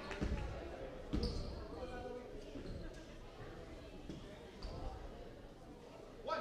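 Basketball bouncing on a hardwood gym floor: a few separate low thuds, just after the start, about a second in and again near the end, in a large echoing hall.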